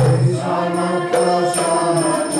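A man singing a Vaishnava devotional chant (kirtan) into a microphone, with a steady percussion beat of about two and a half strikes a second.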